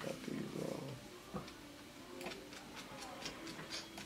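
Quiet room sound with a faint murmured voice in the first second, then scattered light clicks and ticks.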